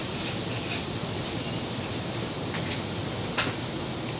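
Steady hum of room air conditioning, with a few faint clinks of ice going into rocks glasses. The sharpest clink comes about three and a half seconds in.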